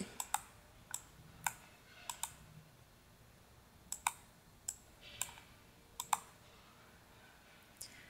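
Computer mouse buttons clicking: about ten faint, sharp clicks at irregular intervals, some in quick pairs.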